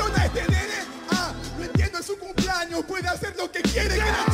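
Freestyle battle rapping over a hip hop beat with deep kick drums that drop in pitch.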